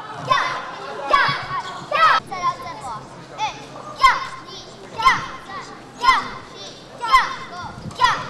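Children's voices shouting together in time with karate techniques, short sharp calls of the kind used for counting and kiai: several close together at first, then about one a second.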